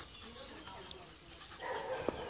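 A dog making soft vocal noises while play-mouthing a person's hand, with a louder, rougher burst of sound near the end.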